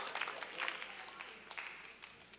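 Faint scattered applause and calls from a church congregation, dying away.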